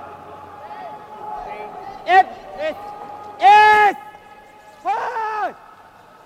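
Curlers shouting sweeping calls at a moving stone: four loud calls, the third held longest and loudest, over the steady brushing of two sweepers on the ice.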